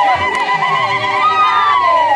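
Women ululating: high, rapidly warbling trilled cries, then a long high call that slides down in pitch near the end, over other voices.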